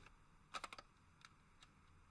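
Near silence with faint clicks: a quick cluster of taps about half a second in, then single clicks every half second or so from the keys of a cordless phone handset being pressed.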